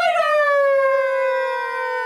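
A man's voice holding one long, high-pitched yelled note that slowly sinks in pitch: a drawn-out 'see you' sign-off.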